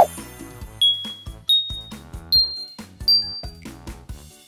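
Background music with a steady beat, opening with a sharp hit. Four bright ding sound effects follow, about three-quarters of a second apart, each a step higher in pitch than the last.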